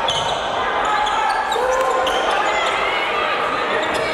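Basketball game sound in a large gymnasium: spectators calling out and cheering over the ball bouncing and players' shoes on the hardwood court.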